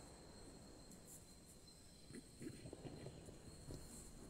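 Near silence: faint room tone with a steady high-pitched whine, and soft faint rustles in the second half.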